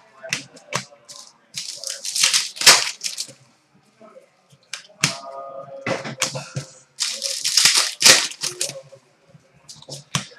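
Trading cards and their foil pack wrappers being handled and shuffled on a glass counter: crinkling and rustling that comes in several short bursts with brief pauses between.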